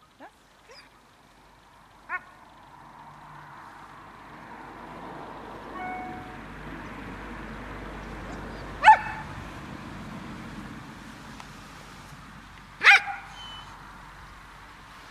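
A dog giving short, high-pitched yelps while sitting at heel: a few small ones in the first seconds, then two loud ones, near 9 s and near 13 s. This is the unwanted vocalizing that the dog is being trained out of.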